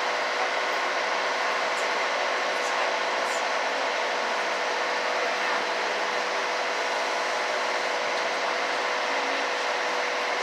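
A small boat's engine running steadily while under way, a constant hum of fixed pitch over a rushing noise, heard from on board.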